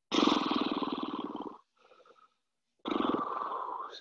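A person breathing hard near the microphone: a long, rough, rasping exhale, a faint breath in, then a second rasping exhale about a second long near the end.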